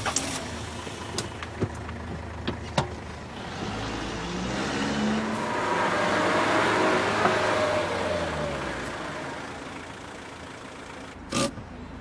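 A van's engine and tyres as it drives up, swelling to a peak about halfway through and then fading away, with a few light clicks in the first seconds and a short sharp sound near the end.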